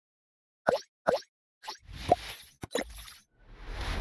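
Logo intro sound effects: two quick plops falling in pitch about two-thirds of a second and a second in, then a run of whooshing noise with more short pops, swelling near the end.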